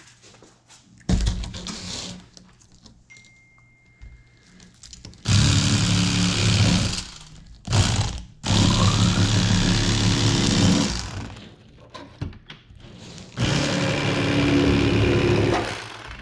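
Electric fillet knife running in several bursts of a few seconds each, its motor humming and blades buzzing as it cuts fillets from a yellow bass; the longest run is in the middle, with a brief stop just past halfway.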